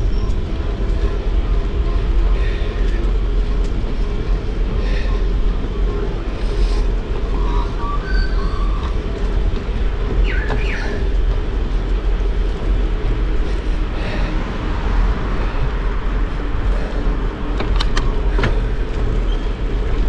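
Steady wind rumble on the microphone of a camera riding on a moving bicycle, with a few brief clicks near the end.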